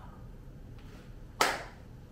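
A single sharp hand clap about one and a half seconds in, with a brief echo of the room after it.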